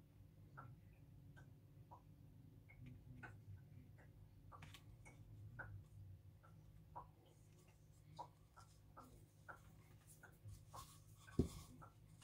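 Near silence, with faint scattered taps and clicks from hands handling small craft pieces.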